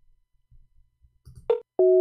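PalTalk call-failure busy tone: the outgoing call is not going through. After a quiet stretch comes a short blip, then near the end the first of a run of steady two-note beeps.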